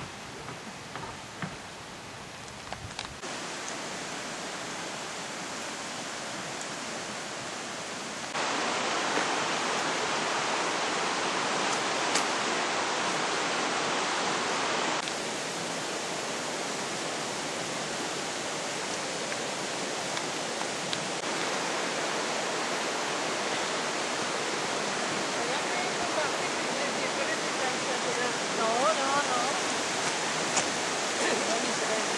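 Rushing river water, a steady hiss that jumps abruptly in level several times.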